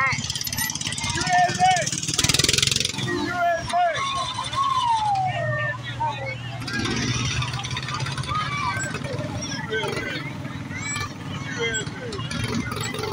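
Spectators' voices and calls over the steady low hum of a small engine as a miniature parade car drives by, with a brief louder rush of noise about two seconds in.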